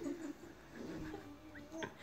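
A baby's faint drawn-out cooing vocalization, rising slightly in pitch near the end, with a short click shortly before the end.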